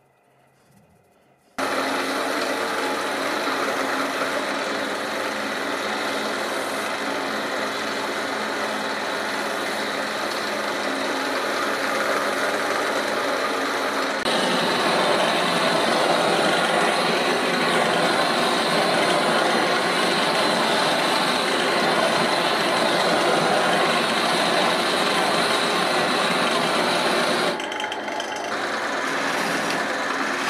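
Wood lathe running steadily with a motor hum, coming in suddenly about a second and a half in. About halfway through, the hiss of a handheld gas blowtorch flame joins over the lathe, lasting until a brief dip near the end.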